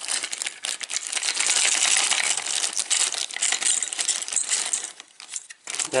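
Plastic packaging crinkling and rustling with many small clicks as parts are unwrapped by hand, dying away about five seconds in.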